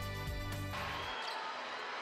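A news music bed ends just under a second in and gives way to the steady ambient din of a basketball arena crowd from the game broadcast.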